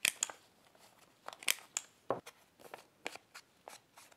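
Paper and small craft tools being handled: an irregular string of short paper crinkles, clicks and taps, the sharpest right at the start.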